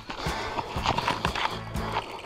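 Footsteps of people walking, a quick regular beat of steps about four a second, with music playing under them.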